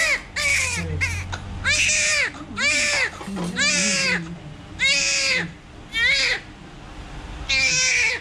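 Newborn baby crying: a string of short, high-pitched wails, about one a second.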